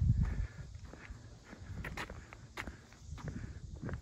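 Footsteps walking on a paved road, with a few light, sharp clicks scattered through. A low rumble, likely wind or handling noise on the phone's microphone, sits in the first half second.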